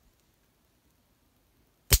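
Near silence, then a sharp crack near the end as a small sample of silver nitrotetrazolate detonates under heating.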